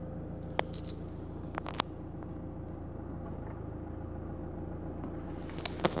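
Nissan Juke 1.5 dCi diesel engine idling steadily, heard from inside the cabin. A few sharp clicks come over it: one about half a second in, a pair near two seconds, and more near the end.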